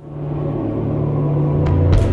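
Opening of a broadcast station ident: a low rumbling synth drone that swells steadily louder.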